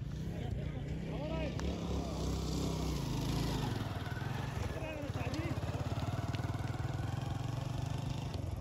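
A small engine running steadily at low speed, with faint distant voices over it.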